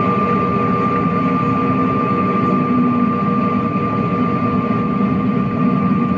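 Airliner cabin noise: a steady jet-engine drone with a thin constant hum over it, cutting in suddenly. It is heard through a television's speaker.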